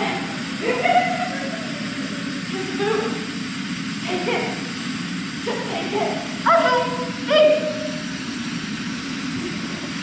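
Short bursts of voice on stage, brief calls and exclamations with rising pitch, some not clear words, over a steady background hiss.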